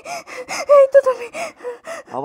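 A woman sobbing in a quick run of short, high, breathy sobs with catching, gasping breaths.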